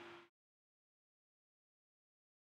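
Near silence: a spoken "um" trails off just at the start, then the audio drops to dead digital silence.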